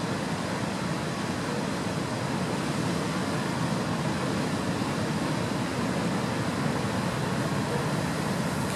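Heavy surf breaking around rocks, a steady wash of noise with no single big crash standing out.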